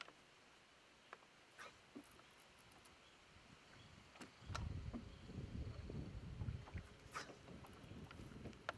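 A few faint scattered clicks, then from about halfway a low, uneven rumble of wind buffeting the microphone on an open boat deck.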